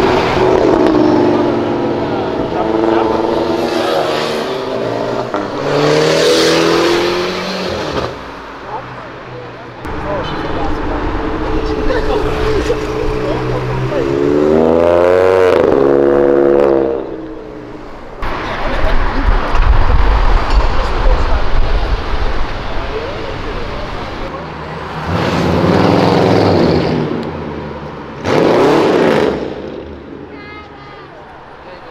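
A series of cars accelerating hard past, one after another, each engine revving up with a rising pitch as it goes by.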